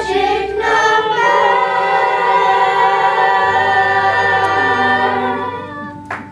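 Children's chorus singing a song's final note, moving through a few notes and then holding one long chord that fades and stops shortly before the end.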